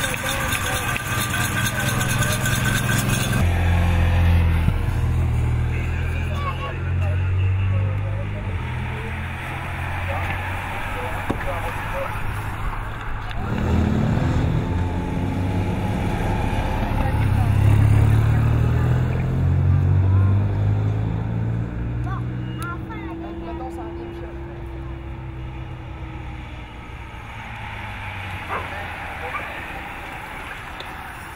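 Low, steady hum of motor-vehicle engines beside a road race, with indistinct voices; a short burst of busier crowd and loudspeaker sound at the start cuts off about three and a half seconds in.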